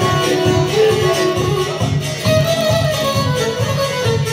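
Tamburica folk music: a long-necked plucked tamburica playing a melody over a steady strummed beat.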